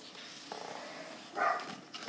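Quiet rustle of a paper colouring-book page being turned by hand, with a short, slightly louder sound about a second and a half in.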